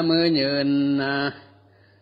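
A monk chanting a sermon in the melodic Northern Thai (Lanna) recitation style, holding long steady notes, and falling silent after about a second and a quarter. A faint low hum runs underneath.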